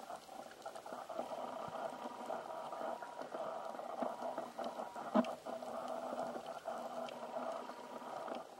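Underwater sound picked up by a camera in a waterproof housing: a steady crackling hiss full of small clicks, with faint steady hums underneath, and one sharp knock about five seconds in.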